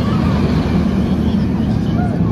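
Steel roller coaster train running along its track close by, a loud steady rumble of wheels on the rails.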